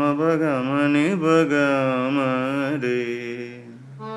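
A voice singing a slow, wavering melodic phrase with vibrato and gliding ornaments, held for about four seconds over a sustained low keyboard note.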